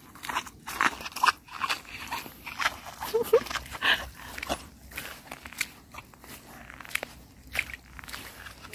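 Footsteps crunching on shell-covered wet sand: an irregular run of crisp crunches, several a second.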